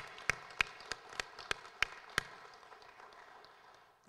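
Applause from a small audience, with one person's sharp claps standing out about three a second; the clapping stops a little over two seconds in and the rest of the applause fades out.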